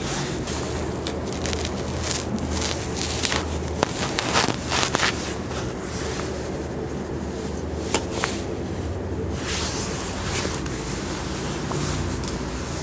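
Inclinometer probe and its cable being lowered by hand into the borehole casing: scattered light clicks and knocks, clustered in the first half and once more about eight seconds in, over a steady low hum and background noise.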